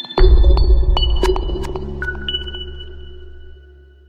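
Electronic intro music sting for a news channel's logo: a deep bass hit just after the start, with ringing high chime tones and light ticks above it, dying away over the next few seconds.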